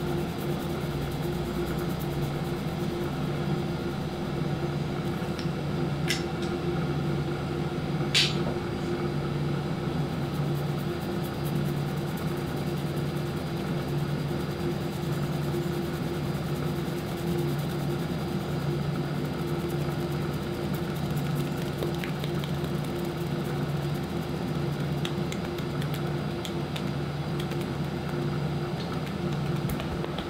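Fingertips rubbing and kneading a client's damp hair and scalp in a head massage, soft and close, over a steady low hum from room equipment such as a fan or air conditioning. Two sharp clicks come about six and eight seconds in, the second the loudest.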